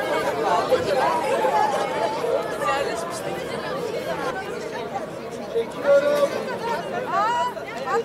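Crowd chatter: many people talking over one another at once, with a few single voices standing out near the end.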